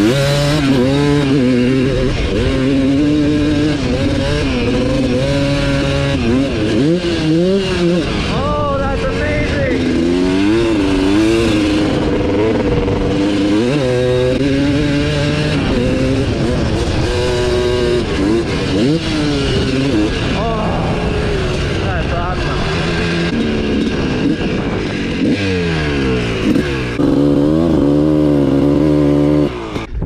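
Suzuki RM250 two-stroke dirt bike engine being ridden hard, its pitch climbing and dropping over and over as the throttle is worked and gears change. It settles to a steadier note near the end, then falls away as the bike comes to a stop.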